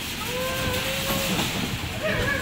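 Bumper cars running on a rink: a steady hiss and rumble, with a faint held tone for about a second in the middle.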